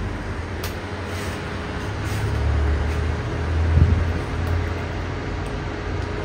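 A steady low mechanical hum and rumble, like a small motor or fan running, swelling slightly around the middle with a brief louder rumble about four seconds in.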